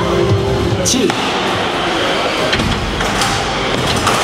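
Steady, loud arena din with background music under a countdown voice, broken by a few sharp metal knocks about a second in and twice near the end, as two combat robots push against each other at the arena wall.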